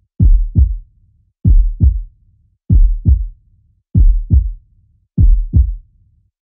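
Heartbeat sound effect: five slow, deep lub-dub double thumps, evenly spaced about a second and a quarter apart.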